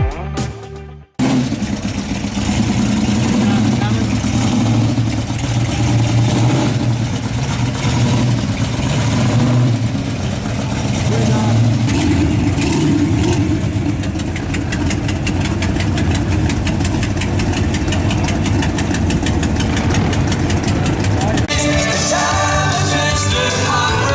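A car engine running with a steady low rumble amid crowd voices. A short stretch of music cuts off about a second in.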